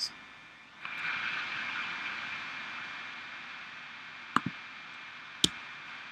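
A steady hiss that sets in about a second in and slowly fades, with two sharp computer-mouse clicks near the end, the first a quick double click.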